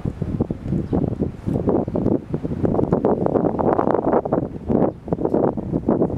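Wind buffeting the camera's microphone: a loud, gusty rumble that rises and falls unevenly.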